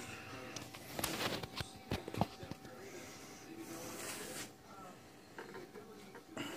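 Faint handling noise: a few light clicks and knocks between about one and two and a half seconds in, over a faint steady hum.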